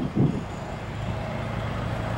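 GE C40-8 diesel-electric locomotive approaching, its 16-cylinder engine running with a steady low drone and a faint hum above it. A brief low thump comes just after the start.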